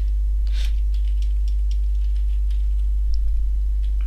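Computer keyboard keystrokes, a scattered run of single clicks as a short phrase is typed, over a steady low hum that is louder than the typing.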